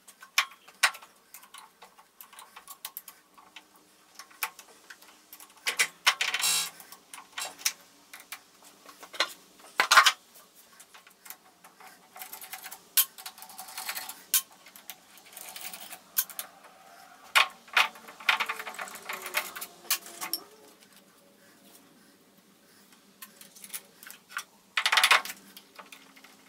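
Hand work on a metal lathe chuck: irregular metal clinks, knocks and scrapes as a wrench works the chuck and the heavy steel chuck is handled on the spindle. A few louder clattering knocks stand out.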